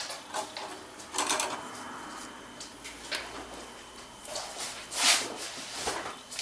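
A handful of short rustles and taps from art materials being handled on a work table, the loudest about five seconds in.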